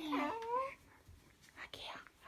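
A drawn-out vocal sound whose pitch jumps up and rises for a moment, then breathy whispered speech ("aqui") near the end.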